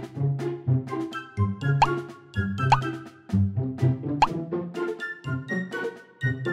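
Playful background music with a bouncy beat of short plucked notes, with three quick rising 'bloop' slides spread through it.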